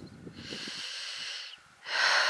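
A person breathing close to the microphone: one long, soft breath starting just after the start and lasting over a second, then a brief pause and a louder breath near the end.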